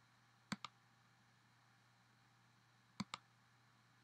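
Computer mouse clicks, in two pairs about two and a half seconds apart: the press and release of the button as a pointer works an app on screen, with near silence between them.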